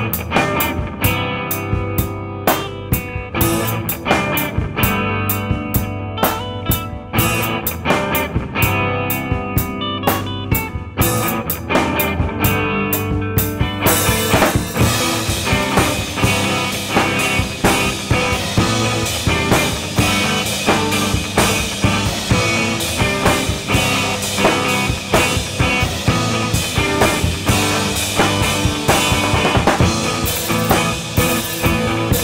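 Instrumental jazz-infused progressive rock from a guitar, bass and drums trio, with mostly clean guitars and a little distortion, driven by a busy drum kit. About halfway through, a wash of cymbals fills in and the band's sound grows fuller.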